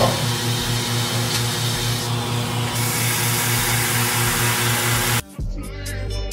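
Bowling-ball drill press and its dust-extraction vacuum running, a steady whir and hiss with a low hum pulsing about five times a second. It cuts off suddenly about five seconds in, and hip-hop music follows.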